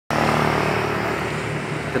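A motor vehicle engine running steadily: an even low hum under a broad rushing noise.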